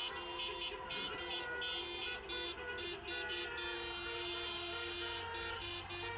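Car horns from many cars in a slow procession honking on and off, held tones overlapping and breaking off, over a low engine and road rumble.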